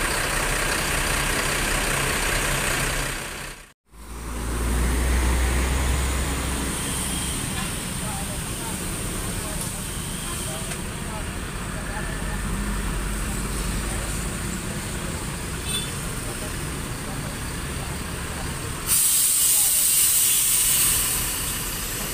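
A Mercedes-Benz OH1626 bus's diesel engine idling steadily, with a deeper rumble for a couple of seconds after a brief dropout about four seconds in. Near the end comes a sudden loud hiss of released air from the bus's air brakes, lasting about two seconds.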